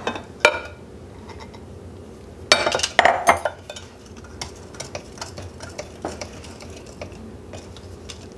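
A Danish whisk stirring thick quick-bread batter in a glass mixing bowl, as dry flour mix is folded into the wet ingredients. A cluster of sharp knocks and clinks of glass comes a few seconds in, then softer, steady scraping of the stirring.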